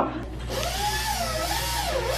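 Dental handpiece with a prophy polishing cup running, a whirring whine over a hiss. It starts about half a second in, and its pitch rises and falls several times as it speeds up and slows down.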